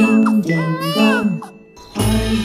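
Two-note ding-dong bell chime, sounding twice: each time a higher note, then a lower one. It dies away about a second and a half in.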